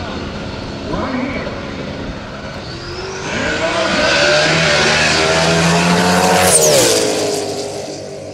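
Turbocharged Mustang drag-radial race car launching at full throttle. The engine builds from about three seconds in to a loud peak around six and a half seconds, then drops in pitch and fades as the car runs away down the track.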